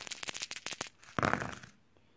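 A handful of five translucent plastic six-sided dice rattle and click together in the hand, then clatter as they land and tumble on a flocked grass gaming mat about a second in.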